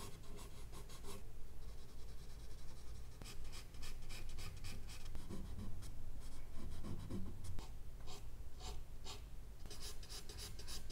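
Charcoal scratching across drawing paper in quick, repeated hatching strokes, about four a second. There is a quieter stretch of smoother shading between about one and three seconds in.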